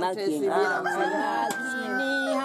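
A rooster crowing: one long drawn-out crow that starts about halfway through and holds a level high pitch, over a woman's voice.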